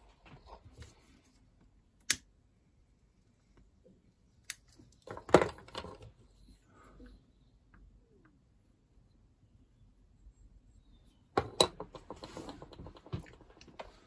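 A few separate sharp clicks and short clattering bursts of small objects being handled in a quiet room: one sharp click about two seconds in, the loudest burst around five seconds, and a run of quicker clicks near the end.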